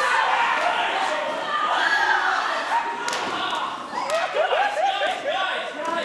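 Performers' voices calling out and vocalizing, with thuds and knocks from bodies and chairs on a wooden stage in a reverberant hall. About four seconds in comes a quick run of short rising calls.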